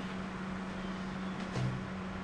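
Steady low hum of a running appliance motor, holding one tone, with a light tap of something handled on the table about one and a half seconds in.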